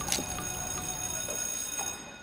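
Trailer sound design: a sharp hit just after the start, then a steady high-pitched ringing tone held over soft, regular ticks, a little over two a second.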